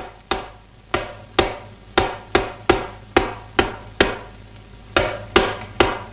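Punches and blows of a kung fu film fight: a quick, uneven series of about a dozen sharp, loud strikes, each ringing briefly, with a short pause about four seconds in.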